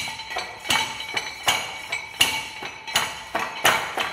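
A steel rod pounding oven-dried clay in a metal tray, crushing it toward powder: repeated sharp metallic clanks with a ringing tone. A heavy strike comes about every three-quarters of a second, with lighter knocks between.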